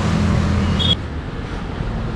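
Street traffic: a motor vehicle's engine gives a steady low hum, which stops suddenly about a second in, leaving a quieter, even traffic background.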